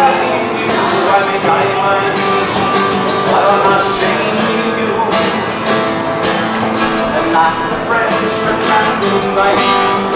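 Acoustic guitar strummed in a steady rhythm in a live song performance.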